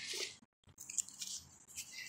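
Quiet background hiss with a few faint clicks. It drops out to dead silence for a moment about half a second in.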